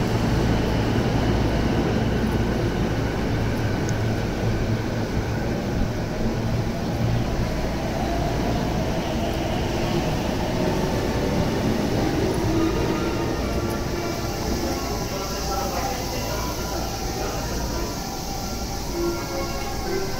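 Sobu Line commuter train at a station platform: a steady low rumble of the train and the station, with faint voices in the background.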